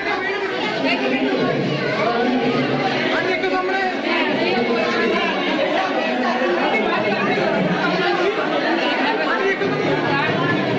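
Chatter of several people talking over one another, a steady babble of overlapping voices.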